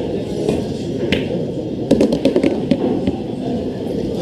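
A pool cue tip strikes the cue ball about a second in, and about a second later comes a quick run of sharp clicks as billiard balls collide, over a steady low background murmur.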